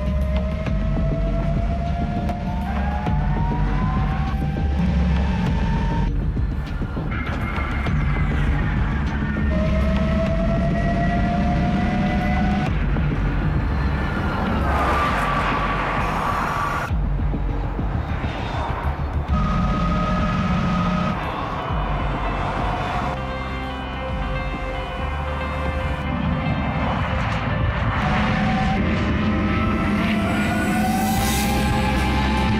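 Background music over the whine of the NIO EP9's electric motors and gearboxes. The whine rises in pitch as the car accelerates, then breaks off and starts again lower, several times over.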